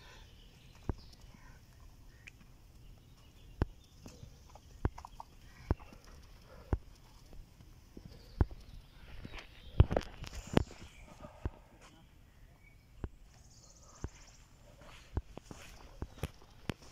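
Footsteps and scuffing on a steep sandy slope as people climb up. Single knocks come irregularly about a second apart, with a quicker cluster of scuffs about ten seconds in.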